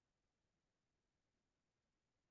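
Near silence: a faint, even background hiss with no distinct sounds.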